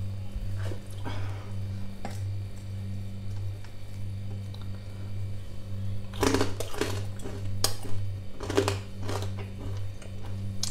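Crunching bites into crisp deep-fried pork skin (crispy pata): about five sharp, crackly crunches in the second half, over a steady low hum.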